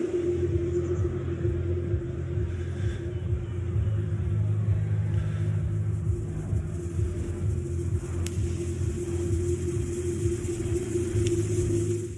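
Low synthesized drone from a film score: a deep rumble under a steady held tone, starting abruptly at a cut, with two faint ticks in the later part.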